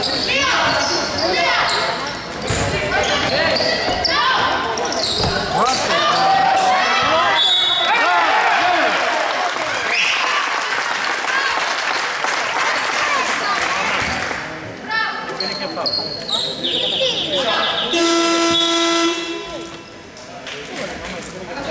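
Basketball game in a gym: a ball bouncing, shoes squeaking, and players and spectators calling out. Near the end an electronic scoreboard buzzer sounds one steady note for about two and a half seconds, after a few short blips.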